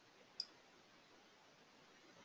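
A single computer mouse click about half a second in, otherwise near silence.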